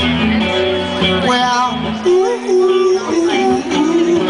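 Live solo electric guitar strummed through a PA, with a man's voice singing over it in the second half.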